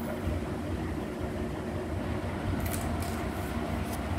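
Steady low background rumble and hum, with a few brief scratchy rustles near the end.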